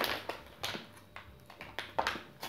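A few faint clicks and taps of objects being handled on a table, scattered through a lull in the talk.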